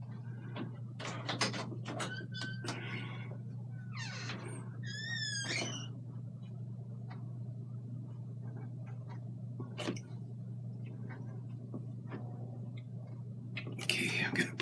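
A steady low hum with scattered small taps and rustles of close hand and brush work. About five seconds in comes a short, wavering high-pitched squeak.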